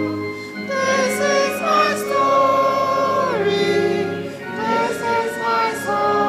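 Church congregation of mixed voices singing a hymn in slow, long held notes, the melody stepping down about three seconds in.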